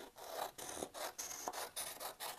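Scissors cutting through a sheet of paper: a quick run of short rasping snips, about four or five in two seconds.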